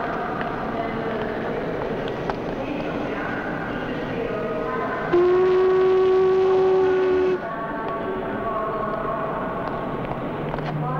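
Busy railway station ambience of crowd chatter, with a steam locomotive's whistle sounding one long, steady blast lasting about two seconds around the middle, cutting off sharply.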